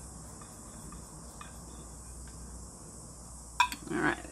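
Quiet handling of a plastic paint cup and wooden stir stick: a few faint light clicks over a low steady background with a thin high whine, then a sharper tap near the end.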